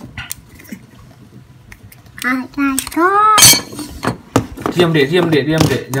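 Small clicks as a Nokia 6300's metal battery cover is worked off, then a sharp metallic clatter on a wooden desk about three and a half seconds in. A child's high voice calls out just before the clatter, and talking follows.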